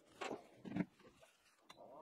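Clear plastic lid of a filament dryer being set in place: two brief, faint knocks of plastic on plastic, then a tiny click near the end.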